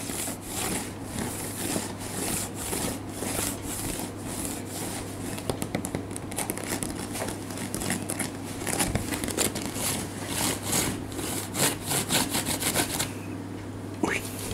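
Fingernails scratching and rubbing on a bamboo floor mat in quick, irregular strokes, stopping about a second before the end.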